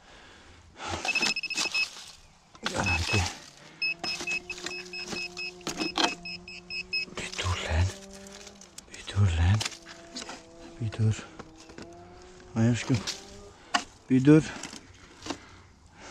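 Metal detector giving a target signal as its coil sweeps a rock crevice: a low, slightly wavering tone in two long stretches, with rapid high-pitched beeping in the first half, marking buried metal. Scattered clicks and knocks of handling come in between.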